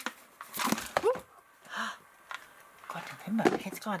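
A woman's startled wordless vocal sounds: short exclamations and breaths with gliding pitch, between a few light clicks.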